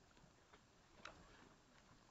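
Near silence with a few faint clicks and rustles from a handheld camera being moved about, the loudest click about a second in.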